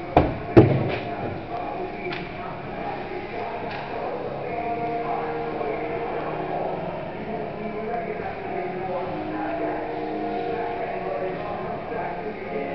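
Two sharp knocks of hockey play in the first second, ringing in the ice arena, followed by many overlapping voices shouting and cheering.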